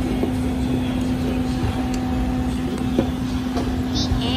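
Steady low background rumble with a constant droning hum, and one light click about three seconds in.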